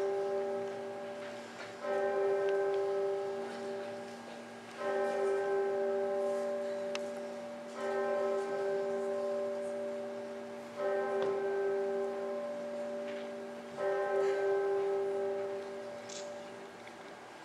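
A single bell tolling slowly, struck five times about three seconds apart, each stroke ringing on and fading before the next: a death knell.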